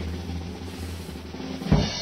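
Drum roll sound effect for a reveal, ending in a single drum hit near the end.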